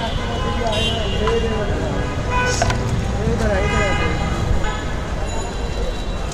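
Busy city street noise: a steady traffic rumble with car horns sounding and people talking in the background, and a single sharp click about two and a half seconds in.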